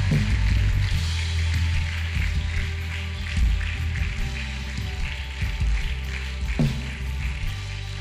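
Slow live worship music: long held chords over a steady deep bass, with no clear beat.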